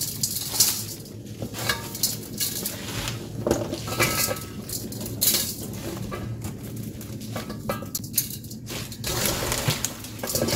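Wet young radish greens being handled in a stainless steel bowl: coarse salt scattered over them, then the leaves rustling and crunching as more are tipped in and turned by hand. Irregular light knocks against the bowl throughout.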